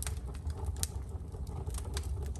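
Wood fire burning in a fireplace: scattered sharp crackles and pops over a low steady rumble.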